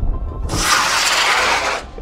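Model rocket's solid-fuel motor firing at liftoff: a loud rushing hiss that starts abruptly about half a second in and cuts off suddenly after a little over a second.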